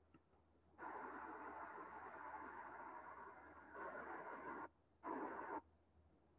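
Faint background hiss with no clear source. It starts about a second in and cuts off abruptly twice near the end.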